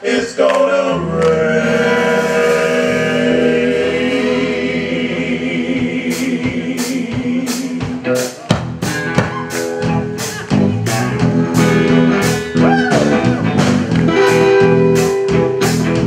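Live gospel-blues music: a male vocal group holds a sustained harmony chord. A steady beat of sharp hits starts about six seconds in, and a couple of seconds later the full band, electric guitar included, comes in.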